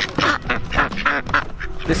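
A cage of domestic ducks quacking repeatedly in short calls, several birds at once.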